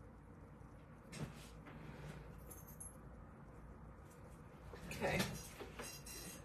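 Faint handling noises at a work table in a quiet room, with one light knock about a second in.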